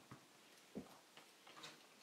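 Faint, irregular clicks and taps of pens being handled on a desk and notebook, with one dull knock a little under a second in, likely a pen being set down on the paper.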